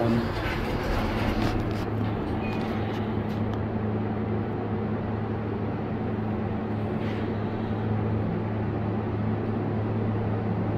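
Hydraulic passenger elevator riding, its machinery giving a steady low hum, with some brief door and cab noise in the first second or two.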